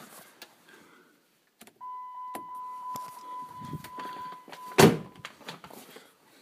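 A steady, high electronic beep held for about three seconds, ending in a single loud knock, with scattered clicks around it.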